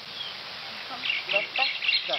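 Small birds chirping in a quick run of short, high notes, starting about halfway in, with brief bits of a voice underneath.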